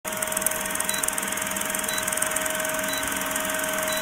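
Vintage film-projector countdown sound effect: a steady mechanical whir with hiss, and a short high beep about once a second.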